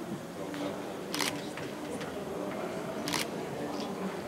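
Two camera shutter clicks, about a second in and again about two seconds later, as photos are taken of the award being presented. A low murmur of voices runs underneath.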